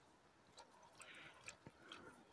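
Near silence with faint scattered ticks and soft wet squelches: waterlogged bog ground giving underfoot as a person shifts his weight on a log.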